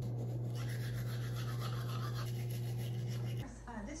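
Toothbrush scrubbing teeth: a steady rasp over a low hum, both stopping suddenly about three and a half seconds in.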